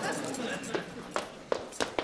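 Faint voices fading out, then a few sharp taps about a third of a second apart: footsteps on a wooden floor.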